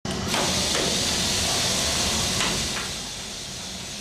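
Aerosol cooling-spray can releasing its flammable propellant gas in a steady hiss. It eases off about three seconds in.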